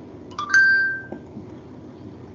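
A short electronic notification chime of two notes stepping upward, about half a second in, dying away within half a second.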